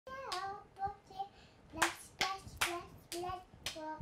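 A young child chanting a rhyme in short sung syllables, with a hand clap on each beat, about two claps a second in the second half.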